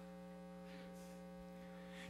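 Faint, steady electrical mains hum: a low buzz with a ladder of evenly spaced overtones, unchanging throughout.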